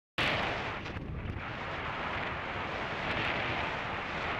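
Wind rushing over the microphone of a camera mounted on a hang glider in flight, a loud steady roar of airflow that cuts in suddenly just after the start.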